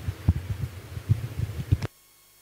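A run of irregular low thuds and bumps from a microphone being handled. A sharp click comes near the end, after which the sound drops away as the microphone cuts out.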